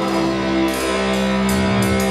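Live rock band playing an instrumental bar with no singing: bass and long held notes, with a few cymbal strikes.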